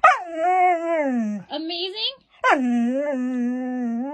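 Husky 'talking': one drawn-out call that slides down in pitch over about a second and a half, then, after a short pause, a second longer call that drops quickly and then holds a steady pitch.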